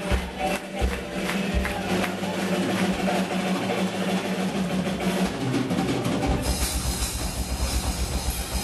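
Live Celtic punk band playing: fiddle and accordion over bass and drums, with a sustained low note under the first part. About six seconds in, the drums kick into a fast, driving beat with cymbals.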